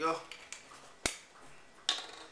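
Glass bottles and glassware being handled on a tabletop: a sharp clink about halfway through and a knock near the end, with a fainter tap before them.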